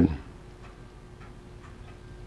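Faint, irregular ticking over a low steady hum in a quiet lull.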